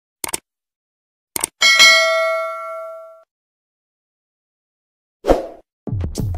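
Subscribe-button sound effects: two short clicks, then a bell ding that rings and fades over about a second and a half. A brief burst of sound comes near the end.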